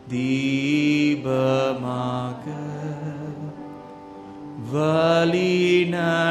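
A voice singing a slow, chant-like worship chorus in long-held notes. It comes in several phrases, and the loudest begins a little before the fifth second.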